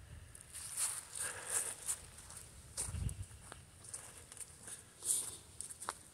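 Faint, irregular footsteps crunching on dry winter grass and leaf litter.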